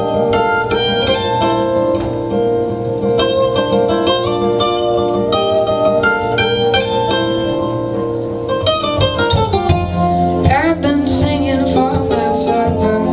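Live acoustic string band playing a song's intro, with acoustic guitar and mandolin picking a bright, steady melody. A voice begins to sing near the end.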